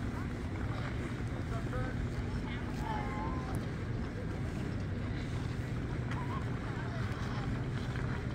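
Steady low rumble of wind buffeting the microphone, with faint distant voices and brief shouts from people skating on an outdoor rink.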